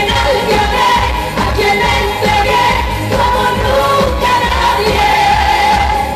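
Live pop music: a woman singing over a full band with a strong bass line.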